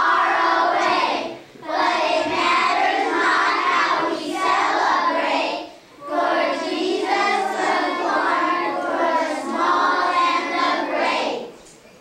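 A group of children singing together as a choir, in three long phrases with two short breaks between them; the singing stops near the end.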